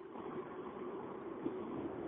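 Faint steady hiss and hum of an open telephone line, with no one speaking; it switches on suddenly at the start.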